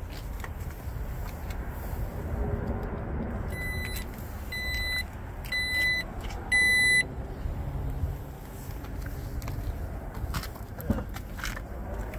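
A 2017 Jeep Grand Cherokee's power liftgate sounding its warning chime: four high beeps about a second apart, the last the loudest, as the automatic tailgate is worked. A steady low rumble runs underneath.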